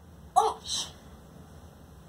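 A young boy's single short vocal burst: a sharp start, a brief voiced sound, then a short breathy hiss.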